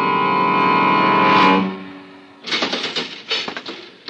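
Orchestral radio-drama score holding a sustained chord that swells and breaks off about a second and a half in. It is followed by a short, irregular clatter of clicks and knocks.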